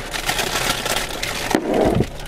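Frozen cucumber handled and laid on a plastic car dashboard: a run of crackling and scraping, with a duller knock near the end.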